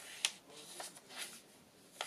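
A page of a thick handmade paper journal being turned by hand: a light tap about a quarter second in, then a few soft paper rustles.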